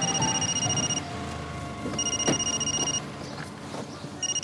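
Mobile phone ringing with a high electronic ringtone: two rings of about a second each, a second apart.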